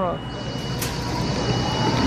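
Steady background rumble of a large store, with a low hum and a faint high-pitched whine.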